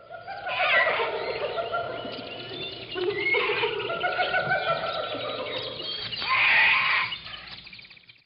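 Jungle ambience of many birds calling at once, a dense tangle of overlapping chirps and whistles. It swells about six seconds in, then fades away near the end.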